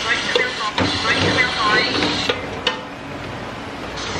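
Diced pork and calabresa sausage sizzling in hot oil in an aluminium pot while a wooden spoon stirs them, with a few sharp knocks of the spoon against the pot. The sizzle eases off a little past halfway.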